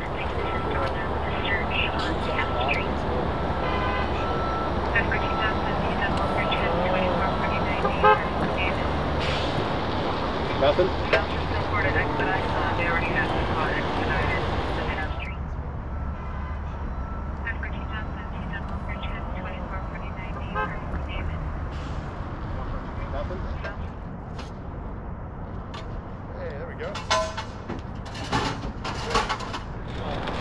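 Outdoor emergency-scene ambience: a steady low engine rumble from an idling fire engine, with a repeated electronic beep in the first several seconds and scattered voices in the background. The rumble and noise drop sharply about halfway through.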